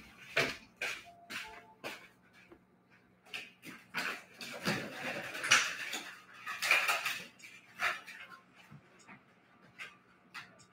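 Rummaging among a box of mini easels: a string of irregular knocks and clatters with bursts of rustling, loudest about four to seven seconds in.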